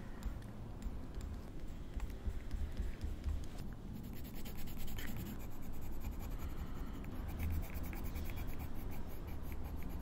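Coloured pencil scratching across paper over dried gouache paint in quick, short scribbling strokes, which grow denser about four seconds in.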